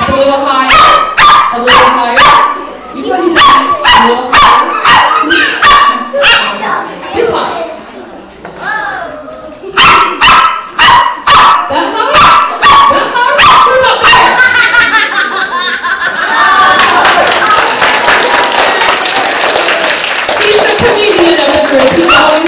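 Small poodle barking in quick, sharp yips, two or three a second, with a short lull about eight seconds in. From about sixteen seconds, an audience applauds.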